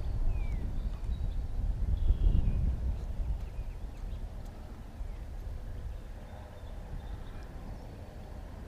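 Wind buffeting the microphone over a lake: a low rumble, strongest in the first three seconds and then easing off.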